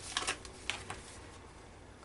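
Paper envelopes rustling and scraping as the glued envelope journal is picked up and turned in the hands: a few short rustles in the first second, then quieter.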